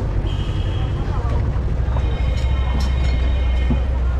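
Steady low rumble of street traffic, with voices in the background and a few held high-pitched tones.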